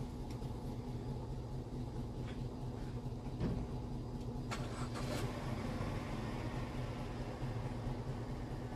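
Steady low machine hum, with a few faint clicks about three and a half and five seconds in.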